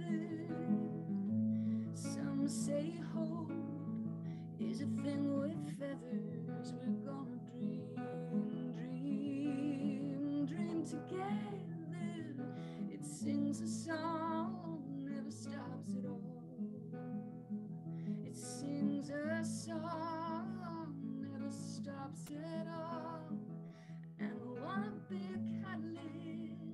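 A woman singing with an acoustic guitar strummed on a few simple chords, her held notes wavering in vibrato. Heard over a video call's audio.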